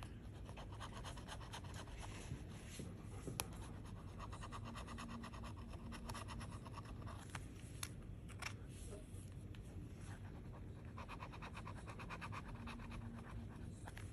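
A metal bottle opener scraping the silver coating off a scratch-off lottery ticket in quick, rapid strokes, fairly faint, with a few sharper ticks.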